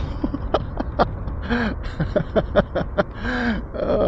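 A man laughing in short bursts while riding fast, over a steady low rumble of wind and road noise on the microphone.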